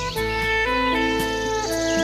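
A melody of held notes on a trumpet over a sustained backing, with a bird calling over the music.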